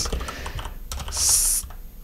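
Computer keyboard typing, a quick run of key clicks, with a brief high hiss a little past the middle.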